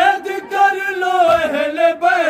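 Men's voices chanting an Urdu noha, a mourning lament, in unison, the melody held in long, wavering notes. A dull thump falls about two-thirds of the way through, one of the evenly spaced chest-beats (matam) that keep time with the lament.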